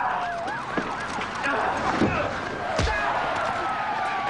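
A siren yelping rapidly up and down, with a slower wail gliding down and then back up beneath it, over a few sharp hits from the fight about a second, two seconds and just under three seconds in.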